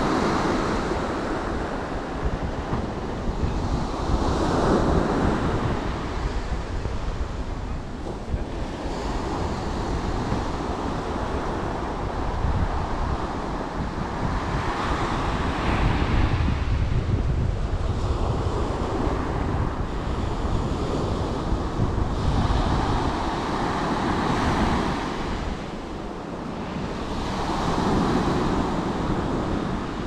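Ocean surf breaking on a sandy beach, the wash swelling and easing every four to five seconds, with wind buffeting the microphone as a low rumble.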